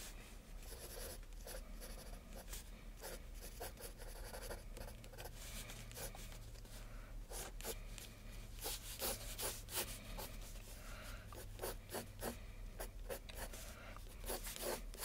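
Pencil scratching across a sketch pad in quick, irregular strokes that are busiest in the second half, over a faint steady low hum.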